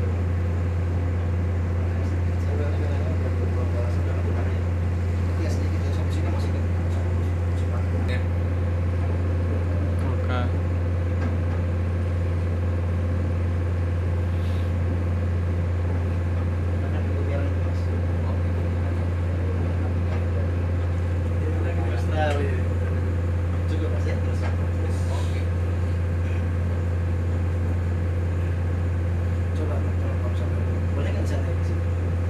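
A small oil tanker's diesel engine running steadily, a deep, even drone with a fainter higher hum over it, as heard on deck while the ship is under way. Faint voices come through now and then.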